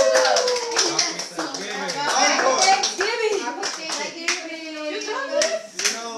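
A small group clapping by hand at the end of an acoustic guitar song, with voices calling out and cheering over the claps.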